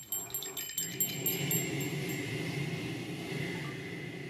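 Small metal bells jingling in a quick run of shakes for about two seconds, then ringing on and slowly fading.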